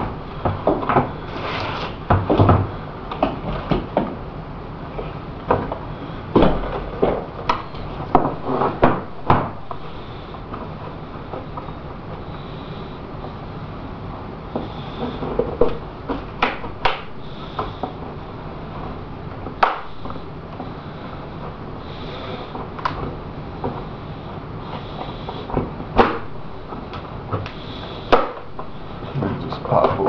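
Fiberglass model-airplane fuselage being worked out of its mold by hand: irregular sharp cracks and clicks as the part releases from the mold, with handling rustle over a steady low hum.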